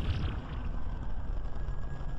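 Low rumble with a fading hiss: the dying tail of a cinematic logo-sting sound effect, its loud whoosh or impact dying away within the first half-second.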